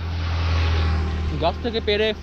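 A road vehicle passing close by, its sound swelling and then fading over about a second and a half, with a man's voice starting near the end.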